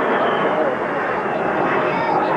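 Indistinct chatter of several people over a steady rushing background noise.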